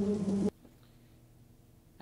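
Steady buzzing of bees, which cuts off abruptly about half a second in, leaving near silence.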